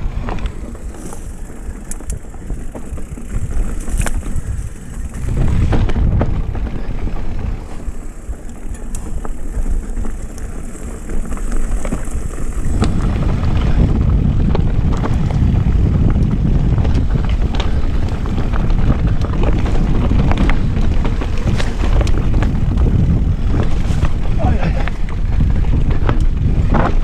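Wind buffeting the camera microphone, with the rattle and knocks of an electric mountain bike rolling over rocky singletrack. It grows louder and steadier about halfway through.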